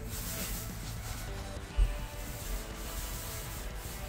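Steady rubbing and scraping of a hand tool worked over a plasterboard wall, with quiet music underneath. A single low bump comes a little under halfway through.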